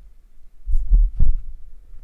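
A few dull, low thumps close together, the two strongest about a third of a second apart.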